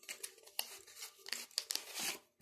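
A tarot deck being handled and shuffled: a run of irregular, crisp card rustles and flicks.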